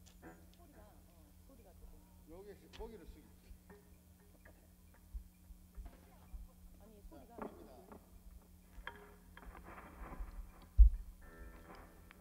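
Steady low electrical hum from the stage amplifiers and PA, with faint scattered voices and a few low thumps from the drum kit and bass, the loudest near the end, as the band gets ready to play.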